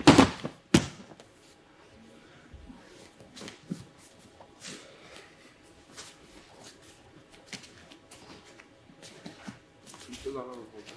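Judo throw landing on tatami mats: two heavy thuds less than a second apart as the thrown partner and the thrower hit the mat. Then only faint shuffling and small knocks of bare feet and gi on the mat.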